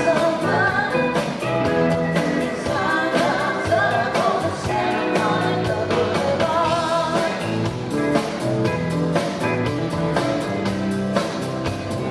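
A live rock band playing: a woman's lead vocal over electric guitars and a drum kit keeping a steady beat.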